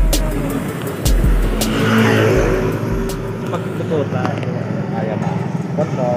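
Road traffic heard from a moving vehicle, with wind buffeting the microphone for the first few seconds and a vehicle passing about two seconds in.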